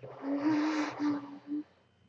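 A woman's wordless, breathy moan: one held, slightly wavering pitch over loud breath, breaking into three pieces and stopping about a second and a half in.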